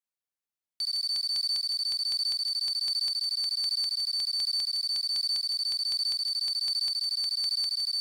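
Countdown-clock sound effect: a steady high-pitched electronic tone with rapid even ticking, about five ticks a second, starting about a second in.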